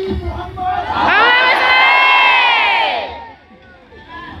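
A large crowd of voices calling out together in unison: one long drawn-out shout of about two seconds, its pitch rising and then falling away.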